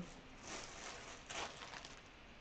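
Faint rustling of a clear plastic bag being handled, in two soft bursts about a second apart.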